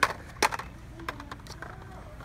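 Blister-carded die-cast toy cars clacking against each other and the peg hooks as a hand flips through them. There is a sharp click at the start, another about half a second in, then a few lighter ticks.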